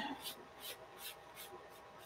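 Soft-lead graphite pencil scratching across drawing paper in a quick run of short, faint strokes, about four a second, pressed fairly hard to lay down dark curved lines of hair.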